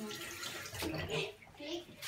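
Water running from a bathroom washbasin's lever tap, with hands being washed under the stream.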